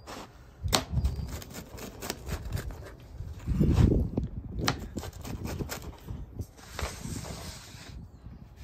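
Metal pizza cutter wheel crunching through the crisp, cheese-crusted edge of a deep dish pizza: a run of crackly clicks and scrapes, with a heavier crunch about three and a half seconds in.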